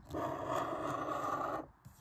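A coin scraping the scratch-off coating from a lottery ticket: one steady scratching stroke that stops a little before the end.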